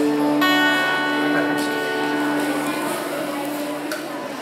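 Acoustic guitar: a chord strummed about half a second in and left to ring, slowly dying away.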